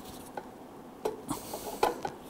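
Pliers working a thin sheet-metal locking tab beside a lawn mower muffler bolt, bending it down so the bolt can't turn: a few small, sparse metallic clicks, the sharpest near the end.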